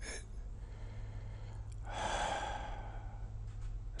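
A man sighing: one long breath out, starting about two seconds in and lasting about a second, over a steady low hum.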